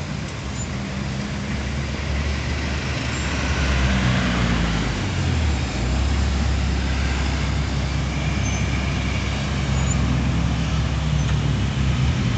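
Road traffic: cars rolling slowly past close by, a steady low engine hum with tyre noise on asphalt. It grows louder a few seconds in as cars pass near and stays loud.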